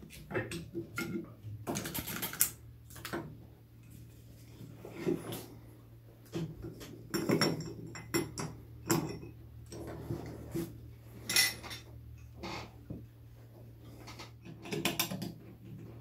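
Irregular metallic clinks, clicks and knocks as a Veritas low angle jack plane is handled on a wooden workbench and its thick blade and lever cap are fitted.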